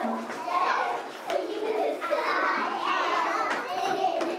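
A group of young children chattering and playing in a classroom, many high voices overlapping without a break.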